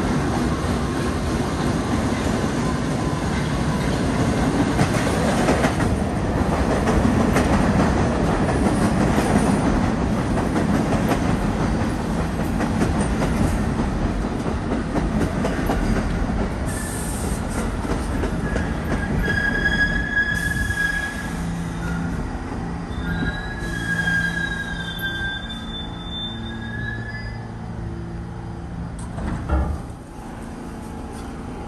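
R68A subway train pulling into a station: a loud rumble of wheels on rail that fades as it slows. High-pitched wheel and brake squeals come in the second half as it comes to a stop. A short knock sounds near the end.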